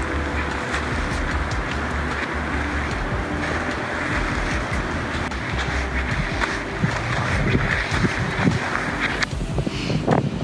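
Wind blowing on a phone's microphone, with a low rumble, mixed with sea surf washing onto a rocky shore. The hiss eases shortly before the end.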